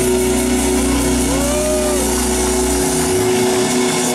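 Live rock band playing an instrumental stretch: sustained chords over a low bass drone, with one note bending up and back down about a second in. The bass drops out near three seconds.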